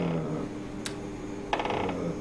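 A man's voice trailing off in a held hesitation sound, a single sharp click about a second in, then a short creaky, rattling hesitation sound near the end.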